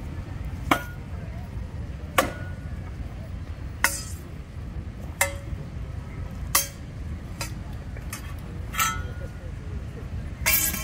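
Mock-combat weapons (an axe and a sword) striking each other and a round wooden shield: about eight sharp knocks and clacks at irregular intervals, some with a brief ring.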